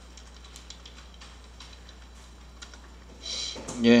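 Typing on a computer keyboard: a scattering of faint, separate key clicks, with a short spoken word at the very end.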